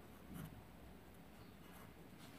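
Faint scratching of a pen writing on a paper page, with a slightly louder stroke about half a second in.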